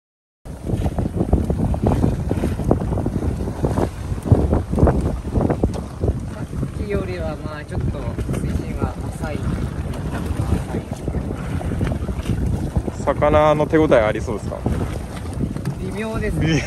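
Wind buffeting the microphone on a small open boat at sea, a steady low rumble with irregular gusts, starting suddenly about half a second in.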